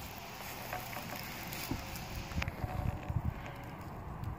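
Outdoor ambience with wind buffeting the microphone in irregular low rumbles, heaviest in the middle and later part, over a faint steady hum.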